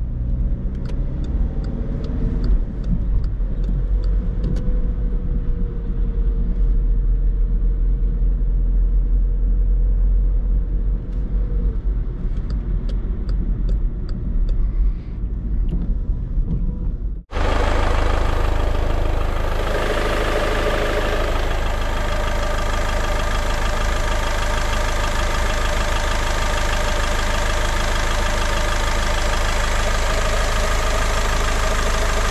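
Cabin sound of a 2010 Skoda Fabia II's 1.6 TDI four-cylinder diesel driving: low engine and road rumble with a regular turn-signal ticking. About two-thirds in, an abrupt cut to the same 1.6 TDI common-rail diesel idling steadily, heard from the open engine bay.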